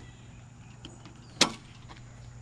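Steady low hum from a pad-mounted utility transformer, with one sharp click about one and a half seconds in and a few fainter clicks.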